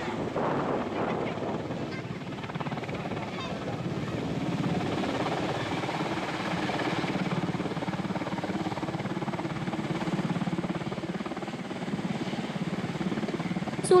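Steady rotor and engine noise of a water-bombing helicopter carrying a slung bucket.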